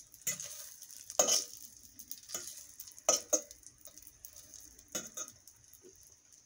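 Sausage patties sizzling in a stainless steel frying pan, a steady high hiss. Several sharp metal clinks of a fork against the pan break in at irregular moments.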